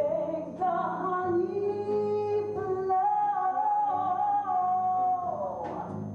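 A woman singing a musical-theatre song in long held notes; one note is held for about two seconds and then slides down near the end.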